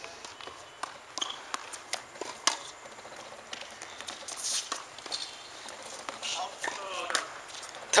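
Scattered light knocks and footsteps on a hard tennis court, irregular and fairly quiet, with faint voices in the distance near the end.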